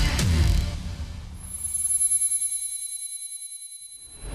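A TV show's intro theme music ends, and its closing sting is a high, fast-pulsing ringing chime that fades out over the last couple of seconds.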